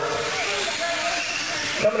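1/10 scale electric RC off-road cars racing on a dirt track: a steady, high hiss of motors and tyres.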